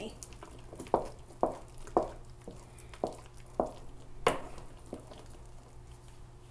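Hand potato masher working through thick mashed potatoes in a bowl, knocking against the bowl about six times at uneven intervals of roughly half a second to a second, the loudest a little past four seconds in. A steady low hum runs underneath.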